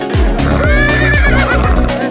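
A horse whinnying once for about a second in the middle, its pitch wavering and dropping away at the end, over loud electronic dance music with a steady beat.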